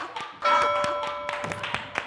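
An edited-in music sting: a sustained chord that starts suddenly about half a second in and holds steady for about a second before fading, with a few faint taps underneath.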